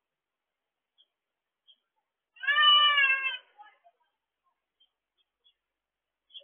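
A single drawn-out animal call about a second long, starting a little over two seconds in, with a clear pitch that falls slightly at its end.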